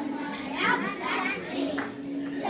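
Several young children's voices together, in chorus.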